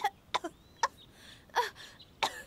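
A young woman's voice giving four short, sharp coughs, spaced unevenly.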